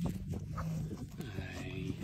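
Black Angus cattle lowing: one low, steady moo lasting just over a second.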